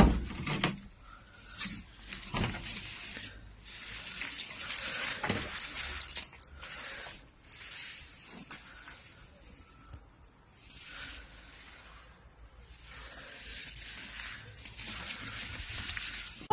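Irregular rustling and scuffing with a few short knocks: footsteps and movement over dry leaves and debris.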